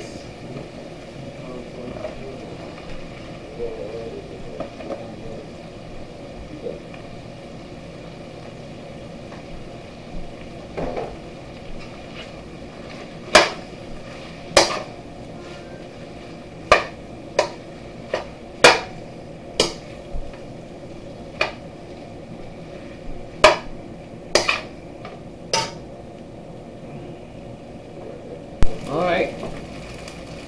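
Slotted metal spatula stirring rice in a stainless steel wok. From about halfway through it strikes the pan about a dozen times, in sharp, irregular clanks, as it breaks up the cold cooked rice.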